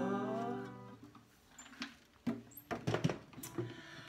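Acoustic guitar chord ringing out and fading over about a second, then a stretch of near quiet followed by a few knocks and clicks as the guitar is handled and set down on its stand.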